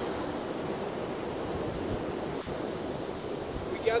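Steady rush of ocean surf, with wind on the microphone.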